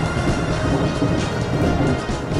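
Electric train running, heard from inside near the front of the car: a steady rumble of wheels on rail with faint steady tones above it.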